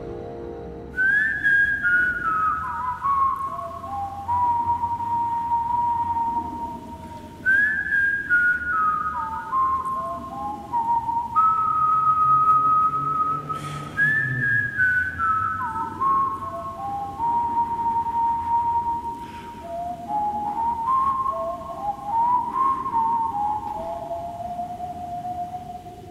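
A person whistling a slow, wistful melody in phrases that step down from high notes, over a soft low backing; it fades out near the end.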